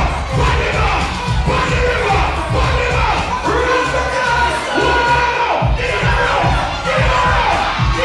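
Live dancehall performance over a loudspeaker system: a heavy, steady beat with a man's voice chanting into a microphone, and a crowd shouting and cheering.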